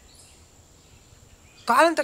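Quiet outdoor ambience with a faint bird chirp, then a voice starts speaking near the end.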